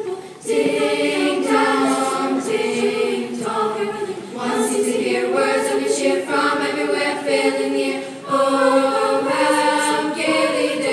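A large middle school chorus of young voices singing together, in phrases of about four seconds, each separated by a brief breath.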